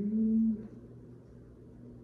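A man's drawn-out hesitation sound, a low hum-like "mmm" rising slightly in pitch, lasting about half a second, then a faint low steady hum for the rest.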